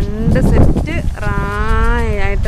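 A long, drawn-out voiced call, held steady for about a second from just past the middle, after a shorter rising call at the start, over a steady low rumble.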